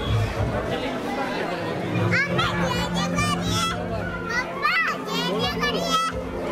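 Young children's high-pitched voices, calling and squealing from about two seconds in, over a steady low drone.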